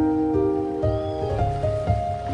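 Slow, gentle solo piano melody, one sustained note following another, over a low rumble of ocean waves. About halfway through, a faint short high cry rises and falls.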